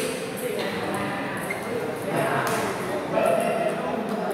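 Celluloid-type table tennis ball clicking sharply off paddles and table during a rally, several hits roughly a second apart, over a steady murmur of voices.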